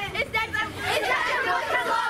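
Excited chatter of a group of children, several high voices talking and calling out over one another.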